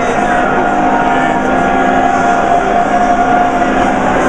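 An a cappella barbershop quartet, three men and a woman singing the baritone part, holding a long chord. Busy lobby chatter runs underneath.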